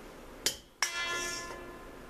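A sharp click, then a single clink of kitchenware against the cooking pot, ringing briefly with several clear tones that fade within about half a second.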